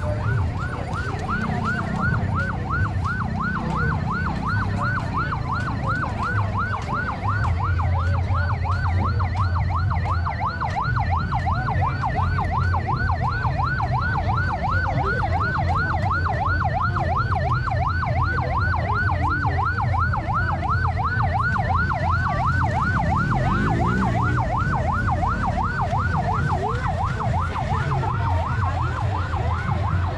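Electronic emergency-vehicle siren in a fast yelp, its pitch sweeping up and down about three times a second without a break, over a low rumble of vehicles.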